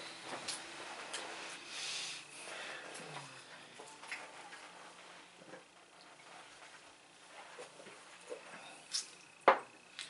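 Quiet room with faint sips and small handling noises as a man drinks from a mug, and one short sharp knock near the end.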